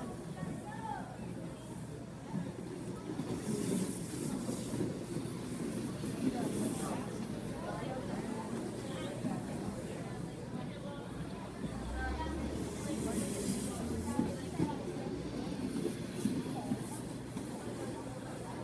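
Inline speed skates rolling on a wooden rink floor, the wheel hiss rising and falling a few times as racers pass, over background chatter.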